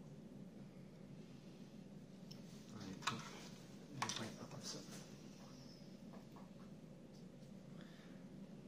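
Plastic model-kit floor panel being handled and turned over: two light knocks about three and four seconds in, with faint rustling around them, over quiet room tone.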